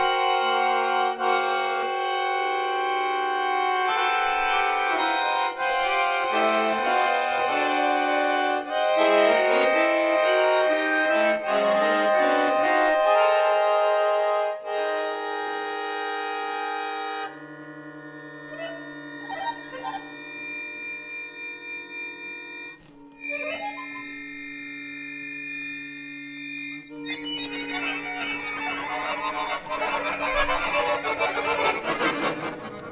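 Chromatic button accordion playing solo improvised jazz: dense chords with quick runs of notes for the first half. Then it drops to quieter long held notes, and swells back into a thick, louder cluster near the end.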